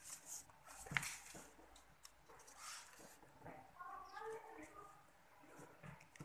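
Quiet rustling and soft taps of origami paper being folded and pressed flat by hand, with a sharper tick about a second in.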